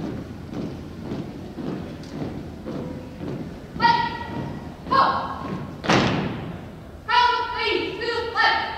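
Drill team marching in step on a hardwood gym floor, the footfalls landing together a little under twice a second, with echo off the hall. About halfway through, a commander shouts two drawn-out drill commands; the team then stamps to a halt with one loud thud, and more shouted commands follow near the end.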